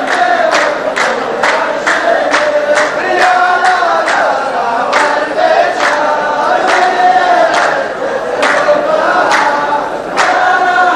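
A row of men chanting a verse together in unison, with their handclaps beating a steady rhythm of roughly two claps a second.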